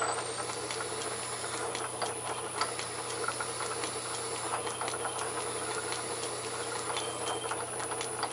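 South Bend metal lathe running in back gear with a steady hum, while silicon carbide lapping grit grinds between a hand-held taper lap and the spinning MT3 headstock taper. The grinding comes through as a continuous dense gritty ticking and crackling.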